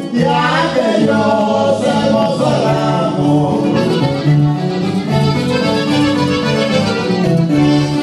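Live Mexican regional band music: an accordion carrying the melody over a steady bass line.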